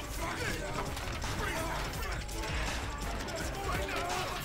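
A scuffle: several men's voices in short shouts and grunts over a jumble of rustling and knocking as a group grapples a man down.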